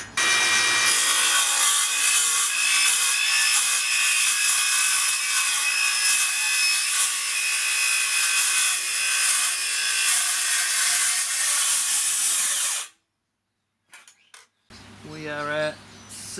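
Makita XGT 40V CS002G cordless cold-cut metal circular saw with a 45-tooth 185 mm blade cutting at full depth through a steel box-section tube: a steady, high-pitched cutting noise with a ringing whine. It cuts off suddenly about thirteen seconds in.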